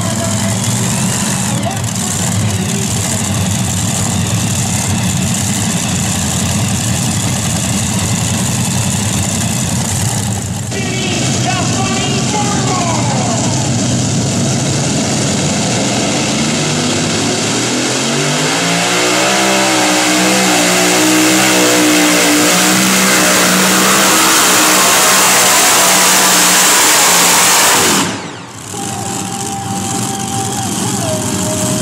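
Modified pulling tractor with several supercharged engines wound up from a low run to full throttle, the pitch climbing over a couple of seconds and then held flat out for about ten seconds as it drags the weight-transfer sled, before the engines cut off suddenly near the end. Before that, multi-engine modifieds are heard running steadily at the starting line.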